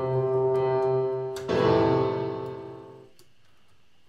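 Software piano chords played through the Verbotron, a fully wet Gigaverb-based reverb. One chord is held, then a second chord comes about a second and a half in and dies away within about a second and a half, fading to quiet near the end. The Damp control is being turned up, cutting off most of the reverb tail.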